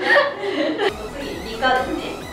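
Several young women chuckling and laughing, with talk mixed in; the laughter is strongest at the start and gives way to a short spoken stretch near the end.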